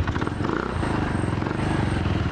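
Small motor scooter engine idling, a steady rapid putter.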